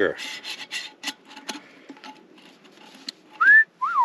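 Light clicks and rubbing in the first second or so. Near the end comes a loud two-note wolf whistle: a short rising note, then one that rises and falls.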